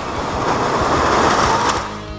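A tower of about 29,000 freestanding playing cards collapsing: a loud, swelling rush of cards clattering and sliding down, strongest past the middle and cutting off suddenly near the end.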